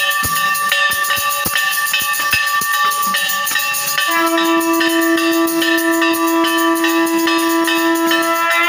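Temple worship music of bells ringing fast and without a break, with drum strikes in the first three seconds. About four seconds in, a long steady horn-like note starts and is held to the end.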